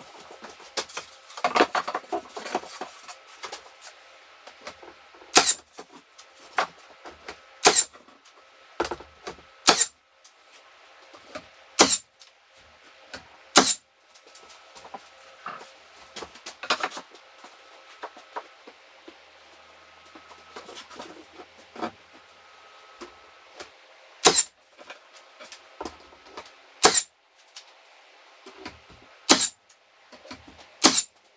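Nail gun driving nails into wooden siding boards: single sharp shots about two seconds apart, five in the first fourteen seconds and three more near the end, with lighter knocks and scraping of the boards being handled in between.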